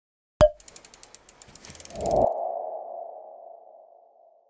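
Logo sting sound effect: a sharp click, a quick run of ticks, then one ringing tone that slowly fades.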